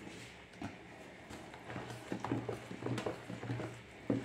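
Flour poured into a plastic bowl of wet dough mixture, then a plastic spatula stirring it, knocking softly against the bowl's side in a quick, uneven series about three times a second.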